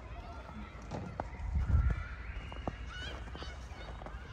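Outdoor ambience with several distant high-pitched calls, one held and rising near the end, and a low rumble of wind or handling on the microphone a little under two seconds in.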